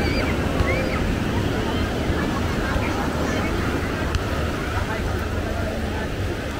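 Small surf washing up the beach, with wind on the microphone and faint distant voices of beachgoers.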